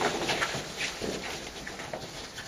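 Drill movements of a cadet squad: boots stamping and hands slapping in a run of sharp, irregular knocks that thin out and grow quieter.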